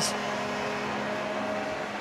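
Ice hockey arena crowd cheering steadily just after a goal, with a few faint held tones underneath.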